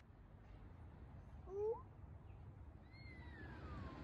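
Two faint cat-like calls: a short call bending up in pitch about one and a half seconds in, then a longer call falling in pitch near the end.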